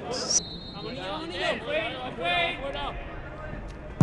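Faint voices calling out on a football pitch under the broadcast's background noise, opening with a short hiss.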